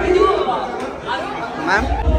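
Several people talking and chattering at once in a busy room, no words standing out.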